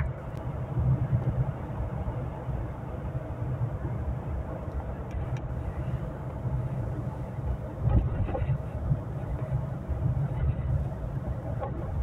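Interior noise of a moving car: a steady low rumble of engine and tyres heard inside the cabin, with a couple of low thumps about eight seconds in.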